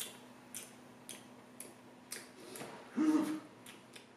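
Faint, steady ticking, about two ticks a second, with a short hum of a man's voice about three seconds in.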